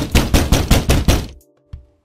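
Rapid, hard pounding on a door, about eight loud knocks a second for a second and a half, then it stops.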